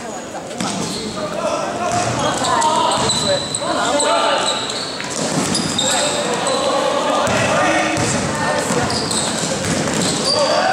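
Indoor basketball game: players and spectators shouting and calling out over one another, with the ball bouncing on the court and sneakers squeaking on the floor, echoing in the gym hall. It gets louder about half a second in as play picks up.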